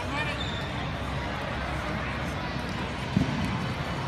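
Busy indoor tournament hall ambience: a steady hubbub of crowd chatter and distant voices. A single dull thump comes about three seconds in.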